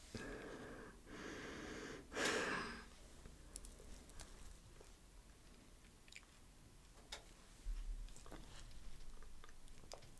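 A woman's strained, breathy exhalations through the mouth, reacting to the burning heat of raw garlic, with a louder breath out about two seconds in. Small mouth clicks follow, then softer breathing near the end.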